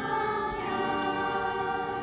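Children's choir singing, holding long sustained notes, moving to a new chord about half a second in.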